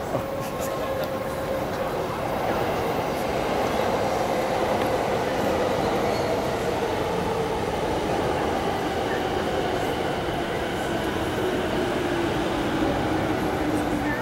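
Electric commuter train running along an elevated railway viaduct: a steady rumble of wheels on the track that swells about two seconds in, with a faint whine that slowly falls in pitch.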